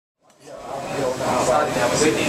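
Kitchen sounds fading in from silence: vegetables frying in a stainless pan with a steady rushing sizzle, and a light metal clink from the utensil about halfway through.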